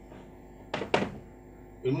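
Two sharp knocks of chalk against a blackboard, about a quarter second apart, as a line of writing is finished. A man's voice starts near the end.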